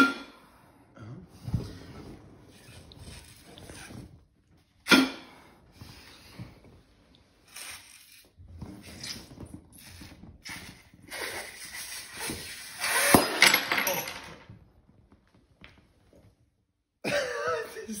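A man blowing hard into a small glass bottle, a rushing breath noise that builds to its loudest stretch, with a sharp crack in the middle of it as the glass bottle bursts. Two sharp knocks sound earlier.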